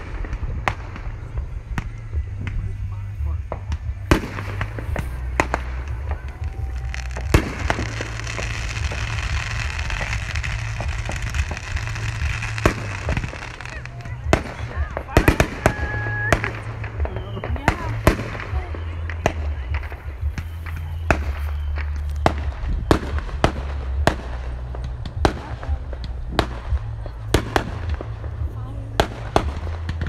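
Aerial fireworks display: a long series of sharp shell bangs, a few at a time early on and coming several a second in the second half. A hiss fills the stretch from about seven to thirteen seconds in, and a low rumble lies under everything.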